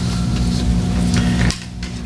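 Steady electrical hum through the meeting room's microphone and sound system, with a few faint knocks. The hum drops off sharply about one and a half seconds in.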